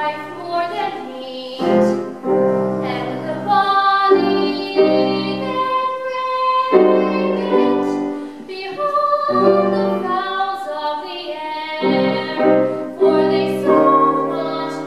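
Classical art song performed by a female singer with piano accompaniment: piano chords under a slow, held vocal line.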